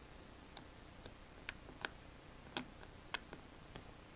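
Faint, scattered small clicks, about six of them at irregular intervals, from the tip of a small hand tool working carbon-fibre vinyl wrap around the raised logo on a laptop lid.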